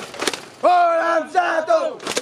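A few sharp claps, then a loud, drawn-out shout of a voice raised in a cheer, held for over a second with the pitch wavering and breaking near the end.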